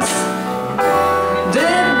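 Live band music from bass and drums under a woman's lead vocal, between sung lines; a new sung line begins near the end.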